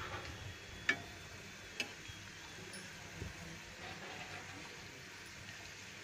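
Pithas frying in oil in a metal wok, a faint steady sizzle, with a spatula clinking sharply against the pan twice, about one and two seconds in.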